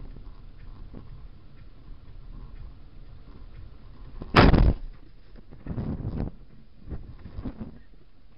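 A car collision heard from inside the car: a low, steady driving rumble, then a sudden loud crash about four seconds in, followed by two further thuds or crunches over the next few seconds.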